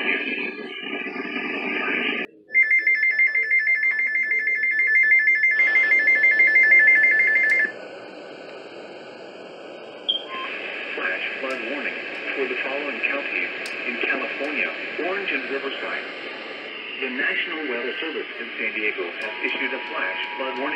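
Radio receiving an Emergency Alert System activation. A couple of seconds in, the SAME header's data bursts sound for about five seconds as a loud screech on two high tones. From about ten seconds in, broadcast voice plays, and near the end the lower two-tone EAS attention signal starts.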